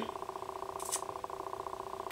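A steady, finely pulsing hum, with a short hiss about a second in.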